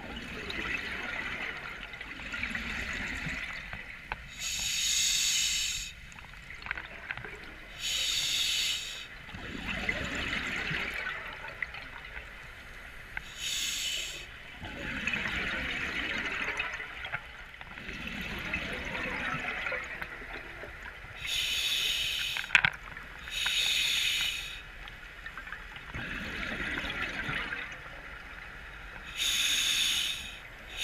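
Scuba diver breathing through a regulator underwater: short hissing inhalations alternate with longer, rumbling bursts of exhaled bubbles, one breath every few seconds. There is one sharp click about two-thirds of the way through.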